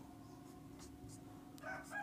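Near silence with a low steady hum. About a second and a half in, a faint, drawn-out high-pitched tone begins.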